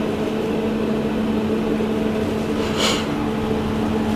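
A steady, machine-like hum with one strong low held tone and fainter higher tones above it, and a short hiss about three seconds in.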